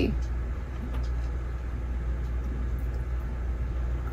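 Steady low hum with a faint background rumble, unchanging throughout.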